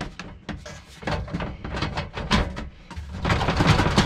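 Metal RV furnace housing being handled and pushed into its cabinet opening: an irregular run of sharp clicks, knocks and scrapes, busiest near the end.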